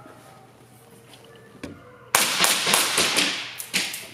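A quick string of pistol shots, about two seconds in, fired one after another at a fast pace and echoing in an enclosed room.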